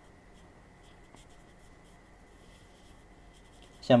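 Quiet snooker arena room tone with a few faint small ticks and rustles over a faint steady high whine; a man's voice starts right at the end.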